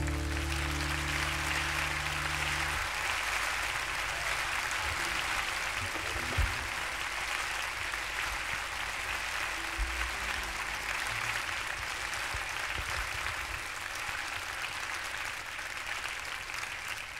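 Audience applause at the end of a live song, a steady even clapping. The last low chord of the accompaniment rings on under it for about the first three seconds.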